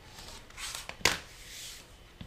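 Rotary cutter rolling through fabric along the edge of an acrylic quilting ruler, trimming a pieced block, with one sharp click about halfway through. Then a soft rustle as the fabric and ruler are shifted on the cutting mat.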